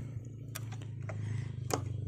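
Two faint taps about a second apart from a hand on a motorcycle's frame and plastic side panel, over a low steady hum.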